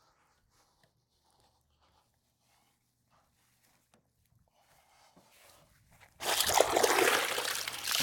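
Faint rubbing of a soapy chenille wash mitt over a car panel, then, about six seconds in, loud water splashing and pouring as the soaked mitt is squeezed out.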